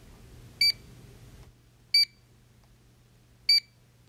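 Barcode scanner beeping three times, short single beeps spaced about a second and a half apart, each one the confirmation of an item being scanned.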